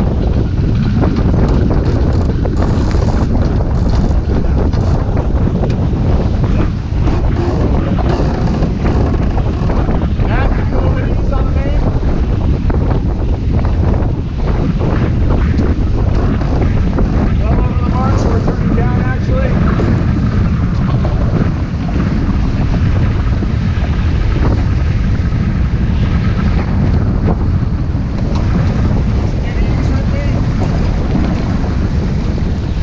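Heavy wind buffeting the camera microphone, with water rushing along the hull of a heeled sailboat under way. Faint voices come through briefly in the middle.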